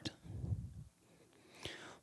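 A quiet pause between a man's spoken sentences. It holds a faint low sound in the first second, then near silence, then a short breath just before he speaks again.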